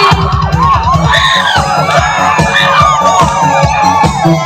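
Fast electronic dance beat from a keyboard over a PA, with a crowd cheering, whooping and shouting over it.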